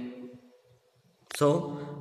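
A man speaking: a drawn-out word trails off, a brief pause, then he starts talking again.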